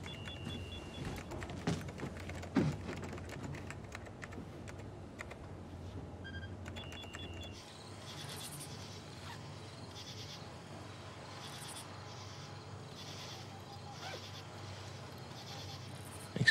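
Shipboard operations-room ambience: a steady low hum with short repeated electronic beeps and scattered clicks like typing on keys. About halfway through the hum drops away into a quieter ambience with faint high chirps.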